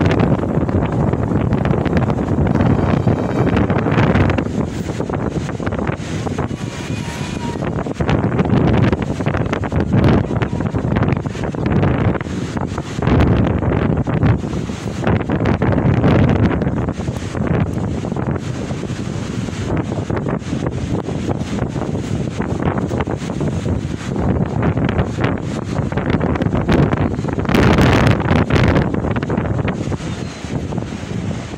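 Wind buffeting the microphone in gusts, rising and falling throughout, over the wash of sea waves breaking on the shore.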